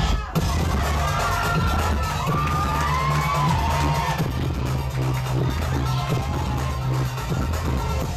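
Dance music played loud through a club sound system, with a heavy, steady bass line, and the crowd shouting and cheering over it. The sound drops out for a moment right at the start.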